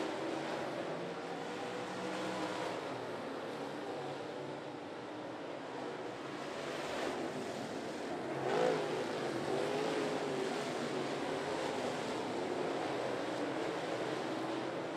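Limited late model dirt track race cars' V8 engines running at speed, heard as a steady wash with engine notes that waver in pitch. About eight and a half seconds in, a car passes close and its note rises and falls.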